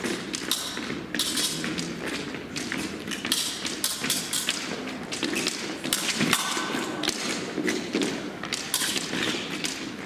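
Fencers' footwork on the piste: irregular thumps and sharp taps as they advance, retreat and lunge.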